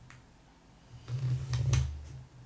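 A hand presses and rubs a paper sticker down onto a planner page. There is a low rubbing thud from about a second in, with two sharp taps near the end.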